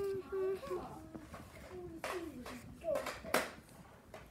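A child's voice humming wordlessly: one held note at the start, then short sliding notes. Short rustles come in among them, the loudest just over three seconds in.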